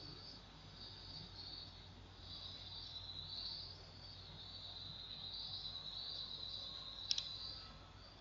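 Faint, steady high-pitched chirring over a low hum, with a brief double click about seven seconds in.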